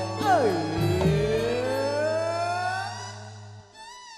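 Live campursari band music: a held bass note under one long sliding tone that dips and then climbs slowly over about two and a half seconds. The music breaks off shortly before the end.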